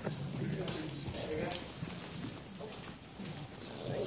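Indistinct voices murmuring in a hall, with scattered light clicks and knocks throughout.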